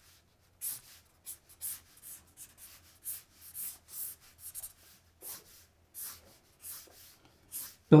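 Felt-tip marker drawn across paper in short, quick strokes, about two or three a second at an uneven pace, as lines are sketched.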